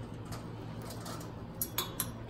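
A few small metal clicks and clinks from a grow light's bead chain and hanger being adjusted on a metal shelf frame, two of them close together in the second half, over a steady low hum.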